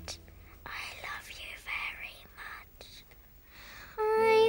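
Quiet whispering in a young girl's voice, a few breathy words with no music behind them.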